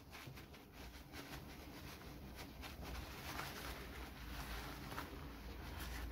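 Faint rustling and dabbing of a paper towel rubbed over the skin of a salted mackerel, blotting off the brine.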